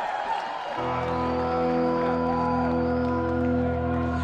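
Arena crowd cheering and whooping. About a second in, a steady sustained chord from the stage comes in and holds without fading.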